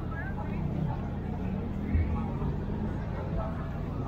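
Crowd murmur: scattered voices of people close by, over a steady low rumble, with a brief thump about halfway through.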